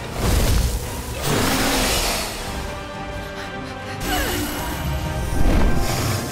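Dramatic soundtrack music layered with heavy low booms and whooshing sound effects, the loudest booms in the first two seconds and again toward the end.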